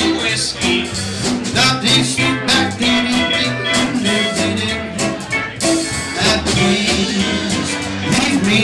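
Live country band playing at a steady beat: electric guitar, upright bass, drums, pedal steel guitar and fiddle.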